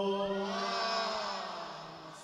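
The end of a line of Arabic devotional chanting: the loud held note breaks off, and softer male voices trail off and fade over about a second and a half.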